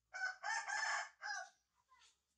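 A rooster crowing once, a loud call in three parts lasting about a second and a half.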